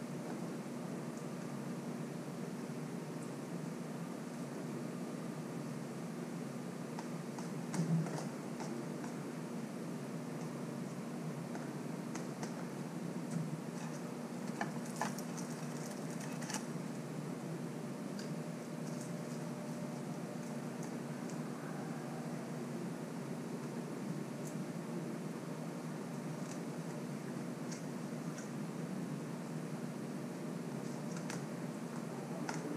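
A steady low mechanical hum, like a fan motor, under faint clicks and scrapes of a spoon in a plastic food container as someone eats. There is a soft thump about eight seconds in and a few sharper clicks around the middle.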